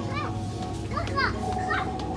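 A young child's high voice giving short repeated cries that rise and fall in pitch, about one every half second to second, over background music.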